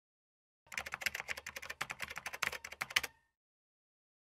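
Keyboard typing sound effect: a rapid run of key clicks starting a little under a second in and lasting about two and a half seconds, then stopping abruptly.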